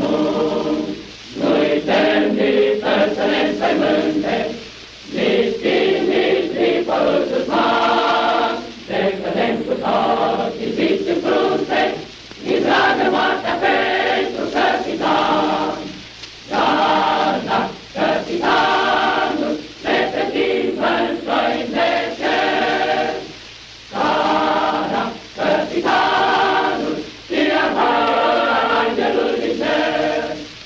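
A choir singing a song in Romanian, phrase by phrase, with a short pause about every three to four seconds.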